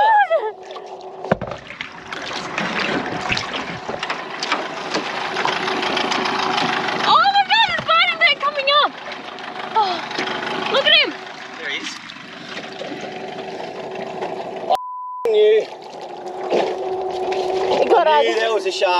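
Water splashing and sloshing against the side of a small aluminium boat, with high, wavering shrieks and yells about seven and eleven seconds in. A short single-tone censor bleep comes near the end, over a steady low hum.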